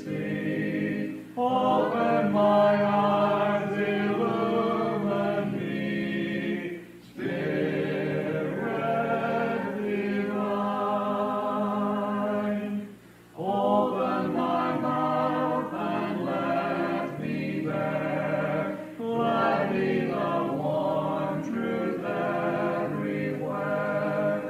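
A congregation singing a hymn a cappella in slow, long-held lines, with short breaks between phrases about every six seconds. The cassette-tape recording sounds dull, with little above the midrange.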